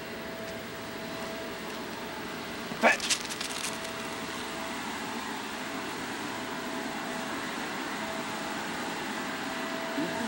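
Steady background hiss with a faint constant whine. About three seconds in comes a single short spoken word, followed right after by a quick run of light clicks.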